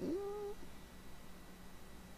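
A brief vocal sound about half a second long right at the start, rising in pitch and then holding steady, followed by a faint steady low hum.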